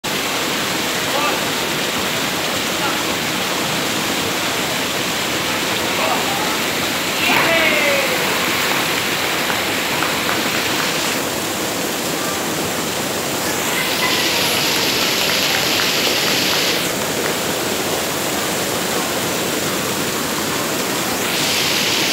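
Steady rushing of a waterfall, with faint voices and a brief shout about seven seconds in.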